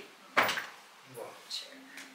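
A pause in a man's talk, broken by a single sharp knock about a third of a second in, which fades quickly.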